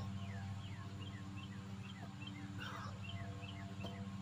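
A bird calling in a quick run of short descending chirps, about three a second, over a steady low hum. There is a brief noisy puff about two and a half seconds in.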